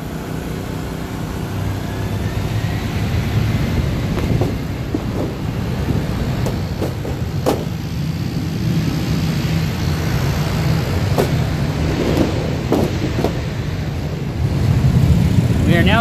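RV rooftop air conditioner with its shroud off, compressor and fan running with a steady low hum on a single inverter generator, now that a hard start capacitor is fitted. A few short clicks and knocks come over it.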